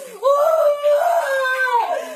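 A woman crying aloud: one long, loud, high-pitched wail that begins about a quarter second in, wavers, and falls in pitch near the end.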